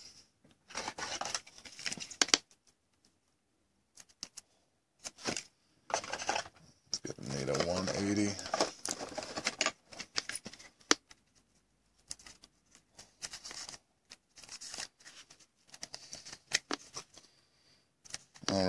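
Plastic rustling, scraping and small clicks as a trading card is handled in a clear plastic sleeve and rigid toploader, in short bursts with pauses between.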